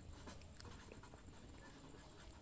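Faint scratching of a pen writing on paper, in short strokes.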